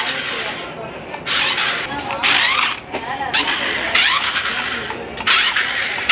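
A small battery-powered RC stunt car running across a tiled floor in short bursts, its electric motor and wheels starting and stopping about five times as it is driven.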